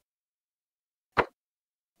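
Silence broken once, just over a second in, by a single short pop.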